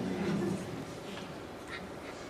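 A man's voice tails off in the first half second, then a pause with only faint noise from the hall and a few brief, faint sounds.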